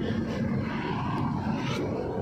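Steady engine and tyre noise of a car on the move, heard from inside the cabin.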